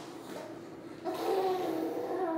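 A young baby cooing and babbling, a high wavering voice that starts about a second in over a low steady background hum.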